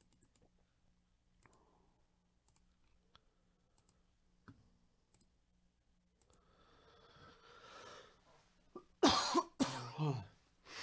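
Faint, scattered computer mouse clicks, then a person coughing loudly twice in quick succession near the end.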